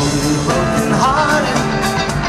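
Live band playing an upbeat song with a steady drum beat and sustained instrument notes; a short voice phrase slides up and down about a second in.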